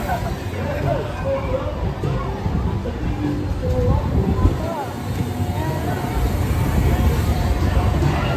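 Carnival ride running, a steady low rumble under scattered voices and crowd chatter.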